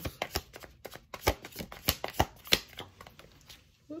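A tarot deck being shuffled by hand: a quick, irregular run of card flicks and clicks that thins out and fades near the end.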